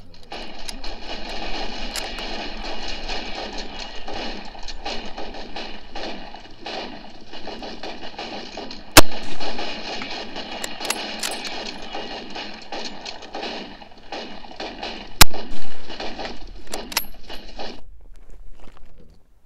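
Massed rifle fire in a battle scene: a dense, continuous crackle of many shots. Two much louder single shots stand out, about nine seconds in and about fifteen seconds in.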